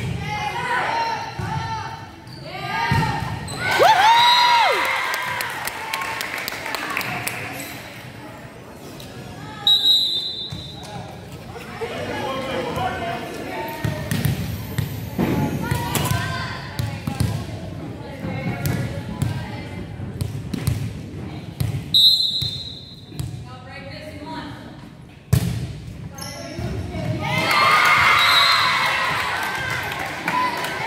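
Volleyball match in a reverberant school gym: spectators and players calling out, the ball being struck and bounced on the hardwood floor, and two short blasts of a referee's whistle, about ten seconds in and again a little after twenty seconds. Shouting and cheering swell near the end as a rally ends with a point.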